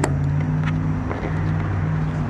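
A sharp click as the tonneau cover's clamp is clipped in under the bed rail, then a few fainter clicks and taps as it is worked tight. Under it runs a steady low hum of an idling vehicle engine.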